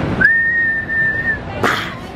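A single whistled note that slides up into pitch and is held steady for about a second, followed near the end by a short hissing burst.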